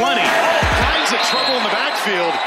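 A man's voice over background hip-hop-style music with deep, falling bass hits in the first second.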